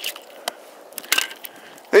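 A few faint, short crunches and clicks of someone moving over dry sand, over a low hiss.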